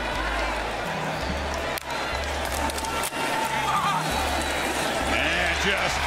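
Hip-hop music with a deep bass line of held notes repeating about once a second, over broadcast stadium noise that swells near the end.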